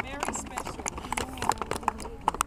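Scattered hand claps from a small group, irregular and uneven, with voices chattering faintly underneath.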